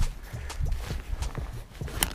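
Handling noise close to a body-worn camera's microphone: irregular light taps and rustles of gloved hands and clothing over a low rumble.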